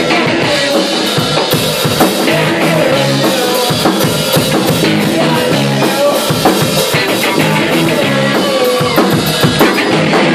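Live rock band playing loud, with the drum kit to the fore, its bass drum and snare hitting steadily under electric guitar.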